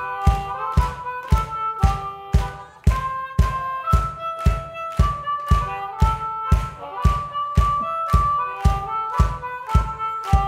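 Blues harmonica playing held notes and short phrases over a steady percussive beat of about two hits a second.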